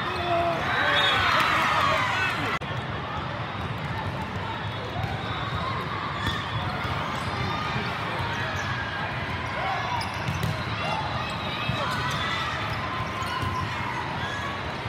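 Volleyball-hall din: a steady babble of many voices from players and spectators, louder for the first couple of seconds, with frequent sharp thuds of volleyballs being hit and bouncing on the courts.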